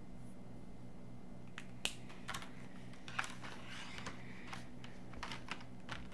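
Plastic Tombow marker pens clicking and clattering as they are sorted through, a scatter of sharp clicks beginning about a second and a half in, over a steady low hum.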